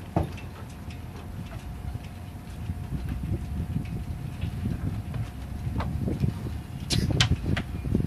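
Low rumble of wind on the microphone, with a few sharp clicks and knocks of boat and mast hardware near the end as the sailboat mast is walked up.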